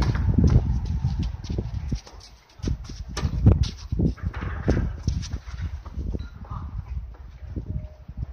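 Tennis rally: sharp knocks of a racket striking a tennis ball and the ball bouncing, among the player's footsteps on the court, spaced irregularly with a loud hit about three and a half seconds in. A low wind rumble on the microphone in the first two seconds.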